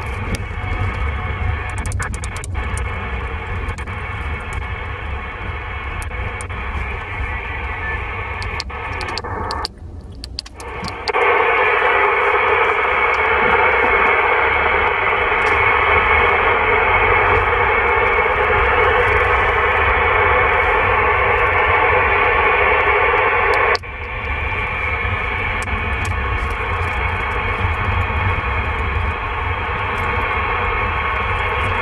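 CB radio receiver (President Lincoln II+) hissing with 27 MHz band noise and static, with a few crackles. About ten seconds in the sound drops out briefly, then comes back as louder, harsher hiss from the receiver in FM mode for about thirteen seconds. It then falls back to a quieter static hiss in USB.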